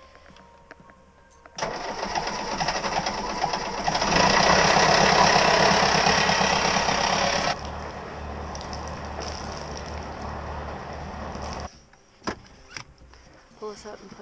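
A sailboat's inboard engine starting and running on land while antifreeze is drawn through its water pump to winterize it. It catches about a second and a half in and runs louder for a few seconds in the middle. It then runs on more quietly and cuts off suddenly near the end.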